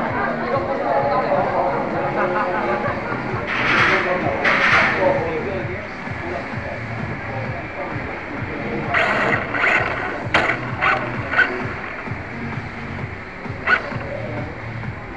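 Venue background of people chattering with music playing. Two short hissy bursts come a few seconds in, then a quick run of sharp clicks about nine to eleven seconds in, and another click near the end.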